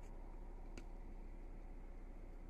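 Quiet room tone inside a parked car's cabin: a low steady hum, with one faint click a little under a second in.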